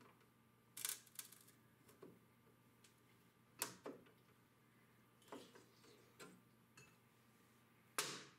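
Faint, irregular metal clicks of end-cutting nippers gripping and working small finishing nails out of a wooden trim strip, a handful of separate clicks spread a second or more apart, the sharpest about a second in and again about halfway through.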